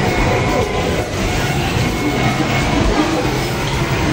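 Amusement arcade din: game machines' music and electronic sound effects blended into a loud, steady wash of noise.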